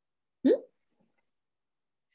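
A single short questioning "hmm?" from a voice, rising in pitch, about half a second in; otherwise near silence.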